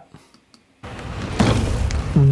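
After nearly a second of near silence, a whoosh-like noisy swell with a deep low end builds up and grows louder. It is the start of the edited video's backing sound effects and music as playback begins.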